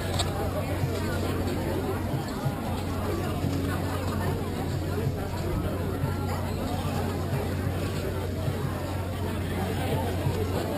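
Indistinct background chatter of several people talking at once, over a steady low hum.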